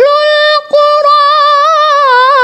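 Qur'an recitation (tilawah): one high solo voice holding a long, drawn-out note that wavers slightly, with a brief break about two-thirds of a second in.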